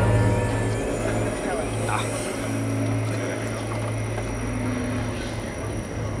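The sound of an outdoor projection show through loudspeakers, recorded on site: a strong steady low hum and a dense rumble, with voices mixed in.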